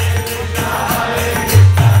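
Kirtan music: a harmonium played with chanting voices, over a steady rhythm of jingling hand-cymbal or tambourine-like strokes and deep bass notes.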